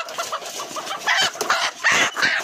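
Young chickens clucking and giving short, irregular squawks, the loudest about a second in and near the end, over rustling and knocking from the birds being handled.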